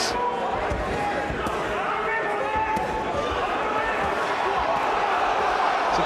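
Boxing arena crowd noise with scattered shouts, broken by several sharp thuds of punches landing on gloves and body.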